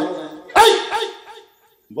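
A man's loud, sudden vocal exclamation into the microphone about half a second in, fading away over roughly a second, then a moment of silence.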